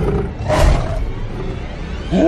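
An animated snow leopard's roar as it charges, a short burst about half a second in, over film score music with a low rumble underneath.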